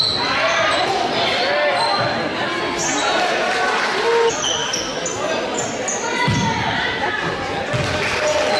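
A basketball game on a gym's hardwood court: the ball bouncing, under overlapping indistinct shouts from players and spectators, echoing in the large hall.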